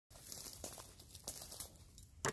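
Faint crinkly rustling with scattered soft crackles, typical of a handheld phone or camera being handled and turned.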